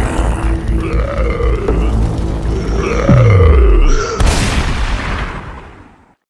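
Horror soundtrack: low pulsing music under drawn-out groaning cries, with a deep falling boom about three seconds in, then a rush of noise that fades out.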